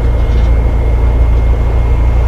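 Engines of heavy construction machinery, a truck crane and a wheel loader, running at a building site: a loud, steady low rumble.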